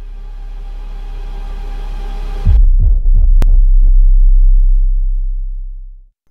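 Cinematic logo-reveal sting: a swelling pitched riser builds for about two and a half seconds, then a deep bass boom hits and rumbles on, with a sharp click about a second later, before fading out near the end.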